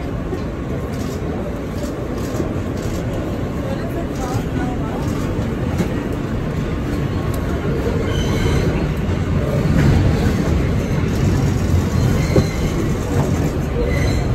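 Subway train in motion, a steady low rumble from the car and tracks that grows a little louder about eight seconds in, with indistinct passenger chatter over it.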